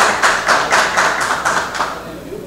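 Hand-clapping close by, about four or five even claps a second, dying away near the end: applause for a bill just approved in a vote.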